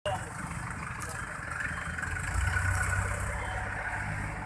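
A motor vehicle engine running nearby in street traffic, its low rumble growing louder a little past halfway, with voices of people standing around.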